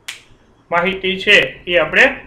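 A man speaking in short phrases, starting a little under a second in, after a brief sharp hiss right at the start.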